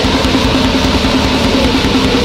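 Grindcore band playing at full speed: heavily distorted guitar and bass holding one low note over very fast drumming. It starts abruptly at the beginning, straight after a sampled voice.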